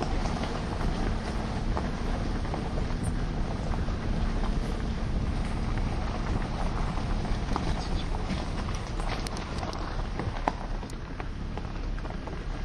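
Car driving along a dirt road: a steady low rumble of engine and tyres, with wind noise on the microphone.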